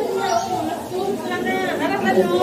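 Indistinct chatter of several voices talking, one rising higher in pitch in the second half.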